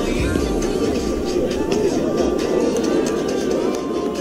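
Background music, loud and continuous.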